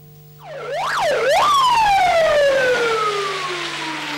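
Fire engine siren: two quick rising-and-falling whoops, then one long tone sliding slowly down in pitch.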